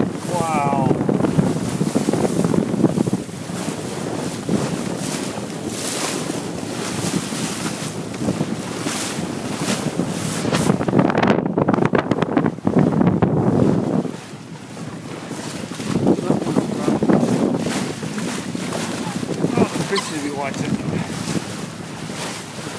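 Wind buffeting the microphone over the rush of water along a sailboat's hull while under sail, swelling and easing in gusts, with a brief lull about two-thirds of the way through.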